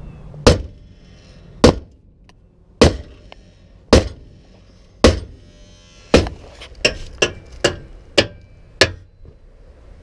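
Sledgehammer blows on the steel leaf-spring pack and axle of a pickup truck, driving at it to remove the lift blocks. About eleven sharp strikes: the first six come roughly a second apart, then a quicker run of five in the last few seconds.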